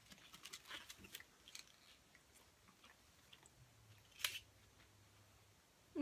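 Faint chewing of chocolates, with small mouth clicks through the first second and a half and one sharper click about four seconds in.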